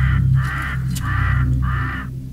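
A crow cawing four times in a steady series, each caw about a third of a second long, over a low, steady musical drone.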